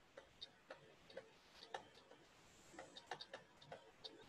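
Faint, irregular clicks of a stylus tapping and dragging on a tablet or pen-display surface during handwriting, about a dozen in all.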